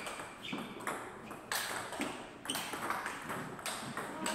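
Table tennis ball being hit back and forth in a rally: sharp clicks of ball on bat and ball on table, about two a second, each with a short ping.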